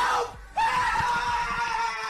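A man screaming: a short yell, then one long held scream starting about half a second in that slowly fades.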